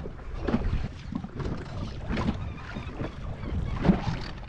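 Wind buffeting the microphone over a steady low rumble, with irregular short splashes and knocks of choppy water slapping against the hull of a drifting jet ski.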